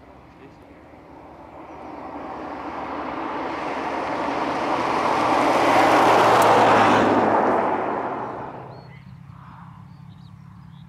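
Ferrari sports car driving past: the engine and tyre noise build steadily over several seconds, peak as it goes by about six to seven seconds in, then fade quickly.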